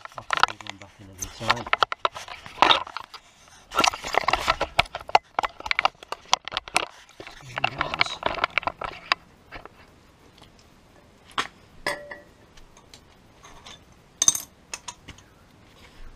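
Irregular metal clicks and clinks of brake pads and their spring clips being pushed into a VW Golf Mk7's front brake caliper carrier by hand. The clicks thin out in the middle and come in a sharp cluster near the end.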